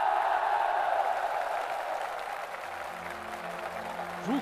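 A large crowd of soldiers applauding, a dense even clapping that starts all at once and slowly fades. Soft music comes in underneath near the end.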